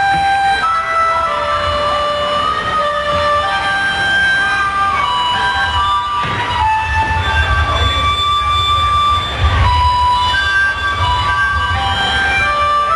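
Live band music: a harmonica playing a melody of held notes over a pulsing bass.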